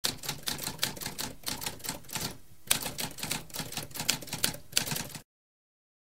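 Typewriter typing: a rapid run of sharp key strikes, a brief pause a little before halfway, then more typing that stops suddenly about five seconds in.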